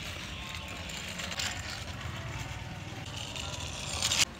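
Small plastic toy bicycle pushed by hand along a rough, mossy wall top: its plastic wheels roll with a steady low rattle.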